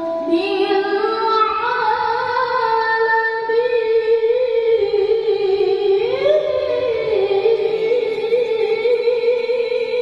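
A woman reciting the Qur'an in melodic tilawah style into a handheld microphone, with long held, ornamented notes that waver. The pitch climbs briefly about six seconds in, then settles back.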